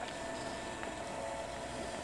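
Quiet room tone: a steady low hiss with a faint hum, with no distinct event.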